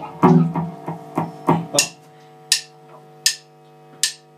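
Drum kit strokes: a quick run of hits in the first two seconds, then three evenly spaced sharp, bright strikes that count the band in. A guitar rings faintly underneath.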